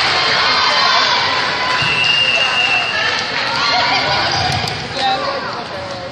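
Spectators and players shouting and cheering over one another in a gym during a volleyball rally. One high, held note lasts about a second partway through, and a few sharp knocks come near the end.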